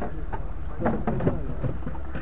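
Vehicle driving slowly over a rough dirt track: a steady low engine and road rumble with short knocks and rattles from the bumps.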